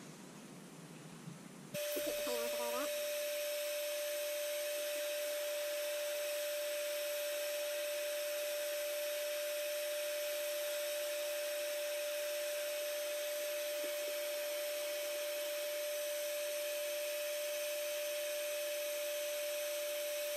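Black and Decker heat gun switched on about two seconds in, then running steadily: an even fan rush with a constant whine, heating a spinner for powder painting.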